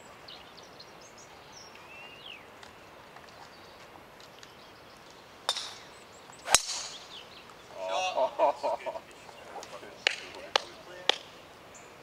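A golf driver striking a ball off the tee: one sharp crack a little past the middle, the loudest sound. A short voiced exclamation follows, and a few light clicks near the end.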